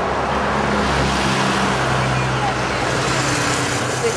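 Road traffic passing close by, a steady rush of noise with a vehicle engine's low hum through most of it.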